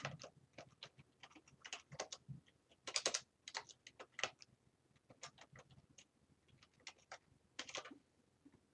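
Typing on a computer keyboard: a run of irregular key clicks, with louder clusters about three seconds in and near the end.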